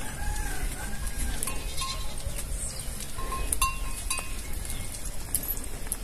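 Goats in a pen bleating faintly, two short arched calls in the first second and a half, over a steady low rumble with a few small clicks.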